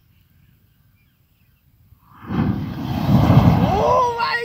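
Clay matka pot packed with thousands of match heads igniting all at once: a loud rushing whoosh of flame that starts suddenly about two seconds in and holds to the end.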